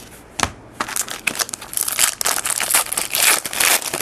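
A trading card pack's wrapper being torn open and crinkled in the hands: a single sharp click about half a second in, then dense crackling from about a second in.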